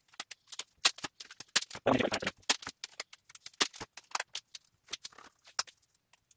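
Strips of polyethylene masking tape being ripped off, stretched and pressed down over a thin plastic membrane: a run of irregular sharp crackles and clicks, busiest about two seconds in.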